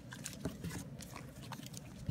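A DSLR camera and its fabric strap being handled and moved over a blanket: irregular rustling and rubbing with a few small clicks.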